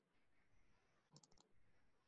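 Near silence, with a few faint computer mouse clicks a little over a second in.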